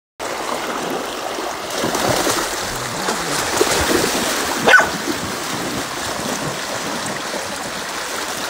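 Swift, rain-swollen river water rushing over shallow rapids, with splashing as a dog wades through it. Just under halfway through, a dog gives one short yelp that rises sharply in pitch.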